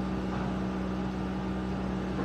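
A steady low hum with a faint hiss underneath, unchanging throughout.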